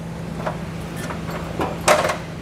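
A few light clicks and one sharper click near the end, from a steel trailer hitch and its fish wires being handled, over a steady low hum.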